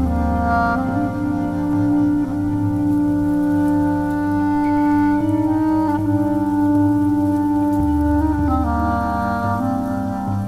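Slow, calm flute music: long held notes over a sustained low accompaniment, the notes changing every few seconds.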